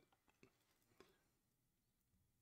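Near silence, with two very faint ticks about half a second apart.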